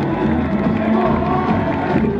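Samba school parade music: the samba-enredo sung over a steady drum beat, with the crowd cheering.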